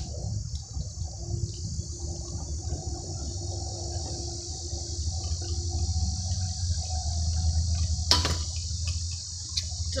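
Kick scooter wheels rolling over rough asphalt, a low rumble that grows louder as the rider approaches, with a single sharp knock about eight seconds in.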